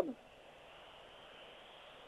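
A man's voice ends a word at the very start. Then comes a faint, steady background hiss under the radio commentary, with nothing else standing out, until the end.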